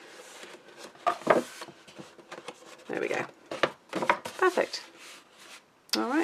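Paper and cardstock being handled on a craft table: short rustles and taps, with a few soft murmurs.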